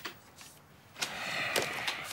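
Paper banknotes rustling as they are handled and counted, starting about a second in.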